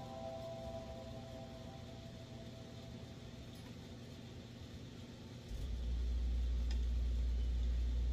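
Faint tail of background music fading out, then a steady low hum that starts abruptly about five and a half seconds in and keeps going.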